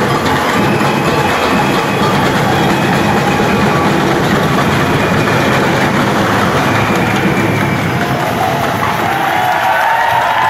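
A live drum group playing a loud, dense percussion rhythm, with crowd noise over it.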